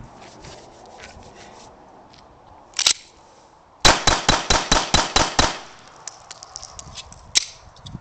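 A Makarov IZh-70 pistol in 9x18 Makarov fires a rapid string of about eight shots in under two seconds, roughly five a second. A single sharp click comes about a second before the first shot, and light clicks follow the string.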